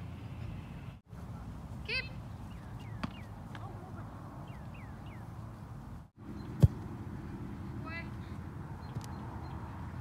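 Soccer ball struck once with a sharp kick about two-thirds of the way through, over a steady low rumble. A couple of short high-pitched calls come before and after the kick.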